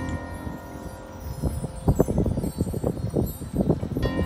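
Marching band front-ensemble percussion: a struck metallic bell-like chord rings and fades, then irregular light metallic tapping and shimmering like wind chimes. A fresh ringing chord comes in at the very end, over a low outdoor rumble.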